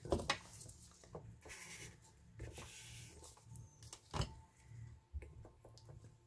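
Faint handling sounds of gloved hands pressing a paper card onto wet ink on a clear acrylic mat: scattered light clicks and taps, with a louder click about four seconds in.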